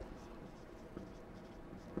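Faint strokes of a dry-erase marker writing a word on a whiteboard.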